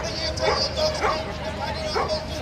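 A dog yipping, four short rising yelps about half a second apart, over the voices of a crowd.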